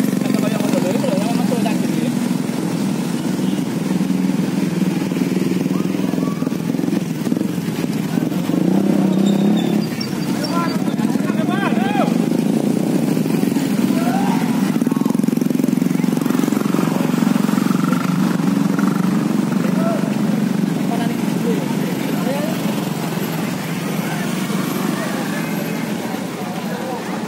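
Motorcycle engines running and passing along a street, a steady low hum throughout, with people's voices calling out over it.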